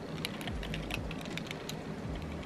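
Light, irregular clicking and tapping as keychains are handled: gold metal clasps and acrylic charms clinking against each other and their card.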